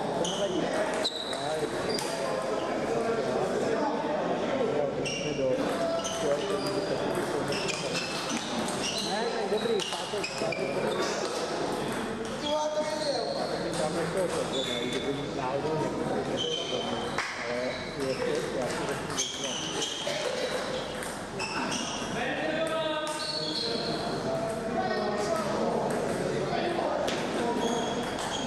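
Table tennis balls clicking off bats and tables and bouncing, in irregular strings of sharp, pinging clicks throughout, over a murmur of voices in a large, echoing hall.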